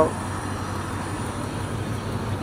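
A Dodge Dakota pickup driving slowly past close by, its engine running low and steady.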